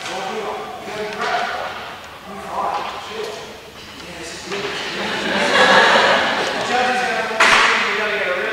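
Indistinct speech echoing in a large hall, then a sudden loud burst of noise near the end.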